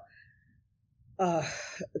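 A short quiet pause, then a breathy, audible sigh a little over a second in, running straight into the next spoken word.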